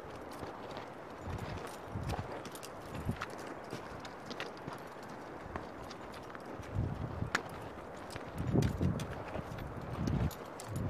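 Mountaineering boots stepping on rocky ground, with irregular soft thuds and the sharp clicks of trekking-pole tips striking rock.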